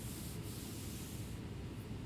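A soft rustling, rubbing sound for the first second and a half, over a steady low hum.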